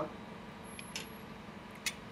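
Two faint, sharp clicks, one about a second in and one near the end, over a low steady background hum.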